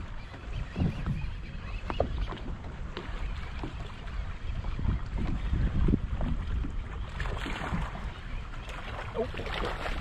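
Wind buffeting the microphone over choppy water slapping against the boat's hull, an uneven low rumble with a few light knocks.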